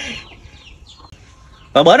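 Chickens clucking faintly in a lull between a man's voice at the start and a laugh and speech that come in near the end.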